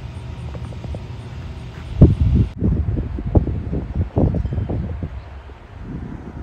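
Wind buffeting a phone microphone outdoors: a low rumble with irregular gusts and thumps, loudest from about two seconds in.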